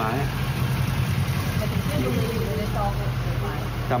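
A steady low engine hum, like a vehicle idling, under faint voices.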